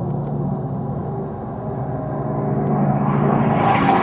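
Unlimited-class racing warbird's piston engine and propeller, a steady pitched drone that grows louder and brighter near the end as the plane closes in.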